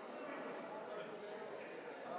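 Faint, indistinct chatter of several people talking in a large hall, with no single voice standing out.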